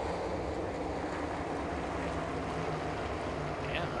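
Steady, even drone of a pack of NASCAR Cup stock cars running together, heard as track sound under the broadcast.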